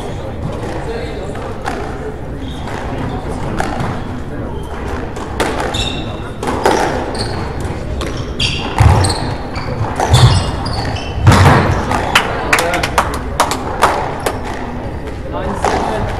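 Squash rally: the ball striking rackets and the court walls, a run of sharp hits starting about six seconds in, loudest a little past the middle.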